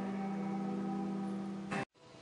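Background music of a TV weather segment, heard through the television's speaker: a steady held chord. It cuts off abruptly with a click near the end, dropping to a brief silence as the recording breaks.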